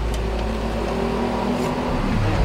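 A motor vehicle engine running steadily, an even low hum, over a low rumble.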